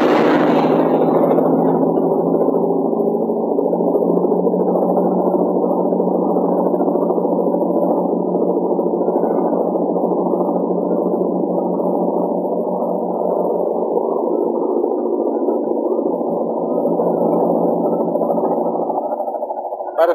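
Steady, muffled engine drone with a fast flutter in it, holding an even level throughout.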